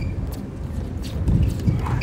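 Quick footsteps of a tennis player's shoes on a hard court close by, with a brief squeak near the start and again near the end, over a steady low rumble.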